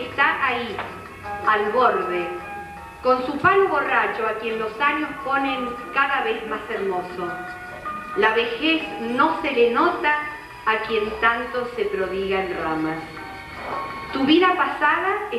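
A woman reading a text aloud into a microphone, with instrumental music with long held notes playing softly behind her voice.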